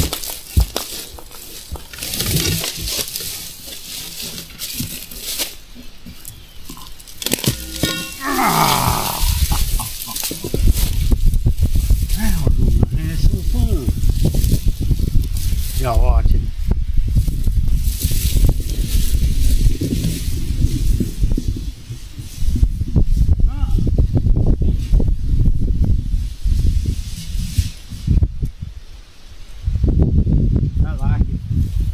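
Dry briars and brush crackling and rustling as they are pulled and trodden through, with a brief pitched sound about eight seconds in. From about ten seconds a heavy low rumble of noise takes over.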